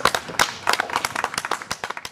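Audience applauding, with individual hand claps heard distinctly rather than as a steady roar. The clapping thins out near the end.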